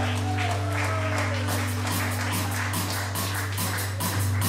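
Live rock band playing: bass and guitar hold steady low notes, and a quick, regular beat of high hits comes in about a second and a half in, at roughly four a second.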